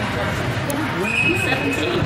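Voices of players and onlookers echoing in an indoor sports hall, with a short steady referee's whistle about a second in, as the ball goes out of play for a throw-in.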